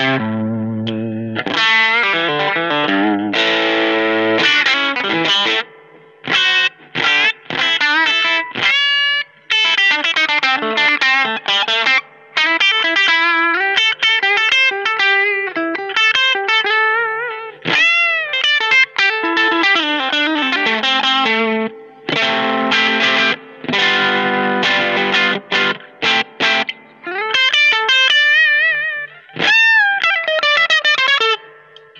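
Squier Vintage Modified Telecaster Custom electric guitar played through an amp with overdrive. Strummed chords for the first few seconds give way to fast single-note lead lines with string bends and vibrato, broken by short pauses.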